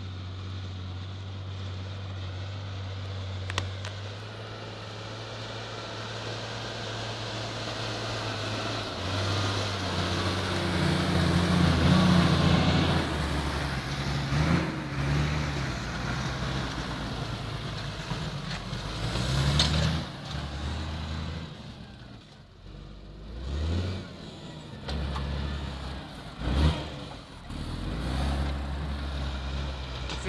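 Farm tractor's diesel engine running steadily under load while pulling a two-furrow plough through the soil. It grows louder as the tractor passes close by, about a third of the way in. A couple of sharp knocks come in the second half.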